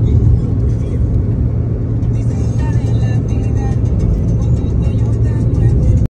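Steady low rumble of a moving vehicle, with music playing over it; everything cuts off abruptly at the very end.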